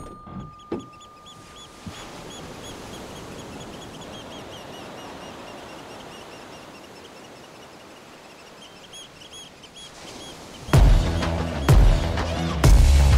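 Steady outdoor ambient noise with small birds chirping over and over. Loud electronic music with a heavy beat comes in near the end.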